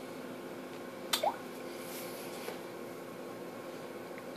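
Quiet room tone with a steady low hum. About a second in comes one sharp click, followed by a short rising chirp.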